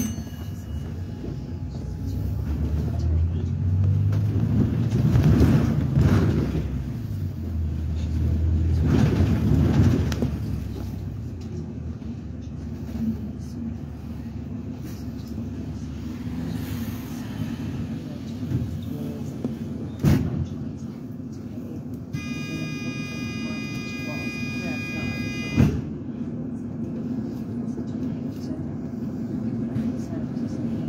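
Cabin noise inside a double-decker bus on the move: engine and tyre noise, with the engine swelling twice early on as the bus picks up speed. A steady electronic tone sounds for about three and a half seconds past the middle, between two sharp clicks.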